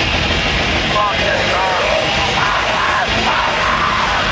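Death metal band playing live at high volume, distorted guitars and drums dense and steady, with pitched voices yelling over the music from about a second in.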